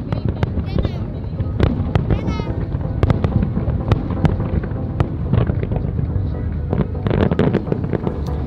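Fireworks display: many sharp bangs and crackles in quick succession over a continuous low rumble of bursts. Two shrill warbling whistles come in the first few seconds.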